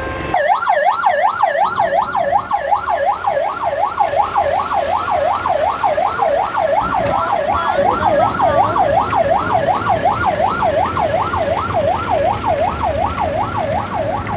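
Vehicle-mounted electronic siren sounding a fast yelp, its pitch sweeping up and down about three times a second; it starts about half a second in and keeps going steadily.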